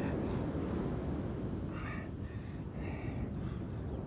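Wind buffeting the microphone, a steady low rumble, with two faint brief sounds about two seconds in and near three seconds.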